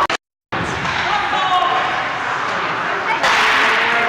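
Ice hockey game heard in an ice arena: voices calling and shouting over a steady wash of rink noise. The sound cuts out completely for a moment just after the start, and the noise grows louder about three seconds in.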